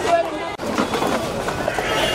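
Several voices talking and calling out at once, with a few short knocks or clicks mixed in. The sound cuts off abruptly for an instant about half a second in, then the voices carry on.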